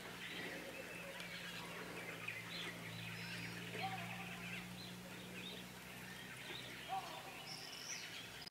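Small birds chirping and twittering over a steady low hum.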